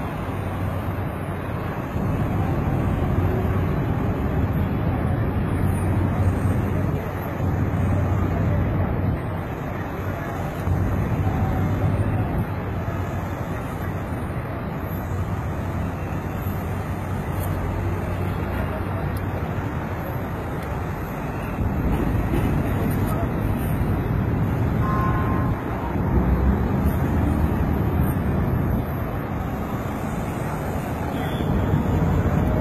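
Steady low rumble of city road traffic, its level stepping up and down every few seconds.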